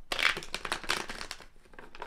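A tarot deck being handled: a papery rush of cards at the start, then a run of quick card flicks that fade out about a second and a half in.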